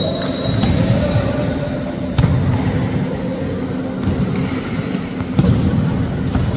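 Volleyball being struck during a rally in an indoor sports hall: three sharp hits, about half a second, two seconds and five and a half seconds in. They sound over a steady background din of the hall.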